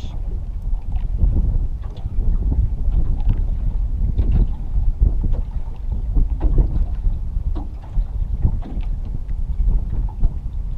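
Wind buffeting the microphone in a loud, uneven low rumble, with river water slapping against the boat hull.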